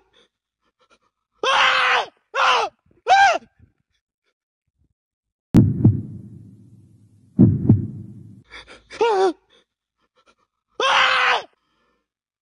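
Several short, high-pitched wordless cries from a person's voice, each about half a second long, with bending pitch. In the middle come two sudden low thumps about two seconds apart, each trailing off in a low rumble.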